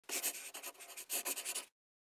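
Quick scratching strokes in two rapid runs, mostly high-pitched, cutting off suddenly near the end.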